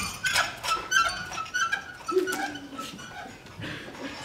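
Wheelbarrow wheel squeaking as it is pushed, a run of short, high squeaks about three a second, followed by a lower, falling squeal about two seconds in.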